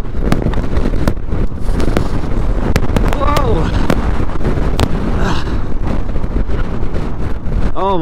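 Heavy wind buffeting the microphone while a Suzuki V-Strom adventure motorcycle rides slowly over a gravel track, a loud, steady low rumble broken by scattered sharp clicks.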